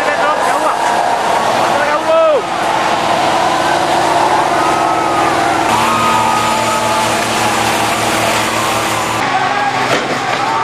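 A crowd of protesters shouting over the steady running of a police water cannon truck's engine and the continuous hiss of its water jets.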